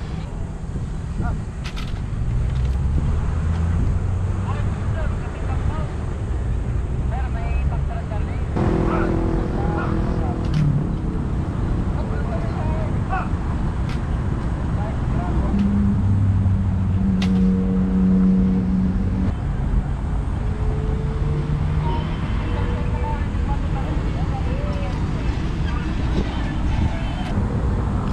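Steady low rumble of city traffic with faint voices of people around and a few sharp clicks. Twice a steady droning tone rises above the traffic for a second or two, about a third of the way in and again just past halfway.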